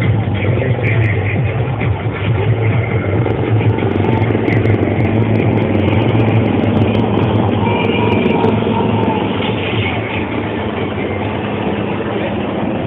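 HAL Dhruv helicopter flying past with a steady engine and rotor noise, with music playing at the same time.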